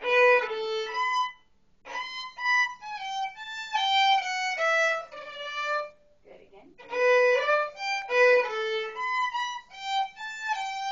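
Solo violin playing a melodic passage in separate bowed notes. It pauses briefly about a second and a half in and again about six seconds in, then starts the passage over.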